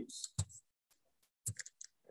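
A few faint, short clicks in a pause between speech: one about half a second in, then a small cluster near the end.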